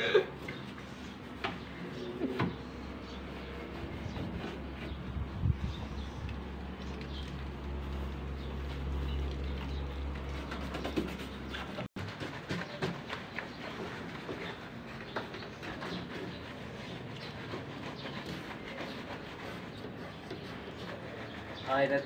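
Wet, soapy clothes being scrubbed by hand in a washing basin: soft rubbing and squelching of fabric with scattered light clicks. A low hum runs under it for several seconds in the first half.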